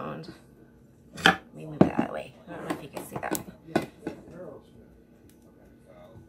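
Hands pressing pizza dough out in a round metal pan: a handful of light knocks and taps against the pan in the first four seconds, with quiet murmured speech in between.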